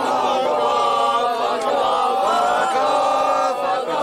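A group of people singing a chant together, many voices held on long sustained notes, loosely in unison.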